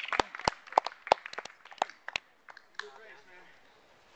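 A few people clapping by hand, irregular claps several times a second that stop about two seconds in, followed by faint voices.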